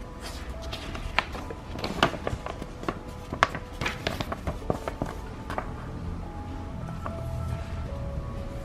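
Paper instruction leaflet being unfolded and handled, giving many short crinkles and crackles, over quiet background music.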